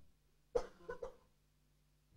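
A short cough about half a second in, followed by a couple of fainter throat sounds.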